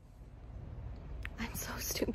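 Faint whispered speech over a low, steady rumble, with a couple of soft clicks just past the middle.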